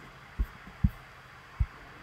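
A few short, soft low thumps, three of them, spread irregularly over a faint steady room hum.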